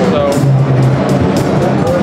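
Loud exhibition-hall din: music with sharp, irregular percussive hits, a held low note and voices over it. Any sound of the freely spinning skateboard-wheel bearings is buried under it.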